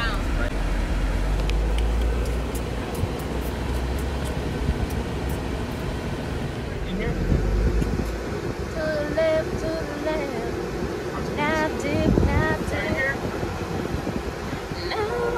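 Wind and road rumble from riding in a moving convertible with its top down. About seven seconds in, it cuts to quieter car-cabin noise with voices over it.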